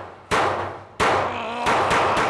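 A handgun fired three times in quick succession, about two-thirds of a second apart, each shot ringing on in the reverberant indoor range.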